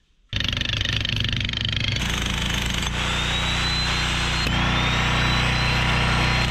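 Electric jackhammer hammering into a boulder, a fast steady pounding that starts abruptly just after the beginning. A high motor whine climbs in pitch after brief breaks about three and four and a half seconds in.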